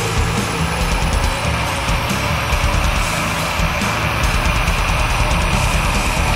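Death metal: heavily distorted guitars over fast, dense drumming with a rapid kick drum.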